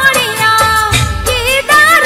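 Gujarati devotional song in a DJ remix: a woman's voice singing an ornamented melody over a steady dance beat with heavy bass.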